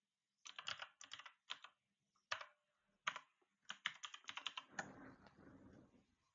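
Computer keyboard keys typed faintly in several quick runs as a password is entered, starting about half a second in and ending in a softer rustle.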